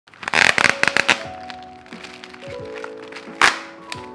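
Plastic of a parcel's shipping-document pouch crinkling as hands handle it, a cluster of sharp crackles in the first second and another loud one about three and a half seconds in, over background music with sustained notes.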